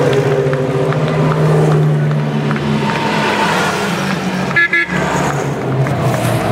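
Engines of vintage racing cars driving slowly past: a steady engine note for the first few seconds, then, after a brief break in the sound, the next car's engine coming in near the end.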